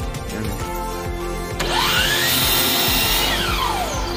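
DeWalt compound miter saw switched on about one and a half seconds in, its motor whining up to speed and cutting through a wooden board, then winding down with a falling whine near the end.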